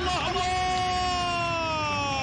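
A football commentator's long, drawn-out shout held on one high note, sliding down in pitch through the second half, over a low crowd hum in the stadium.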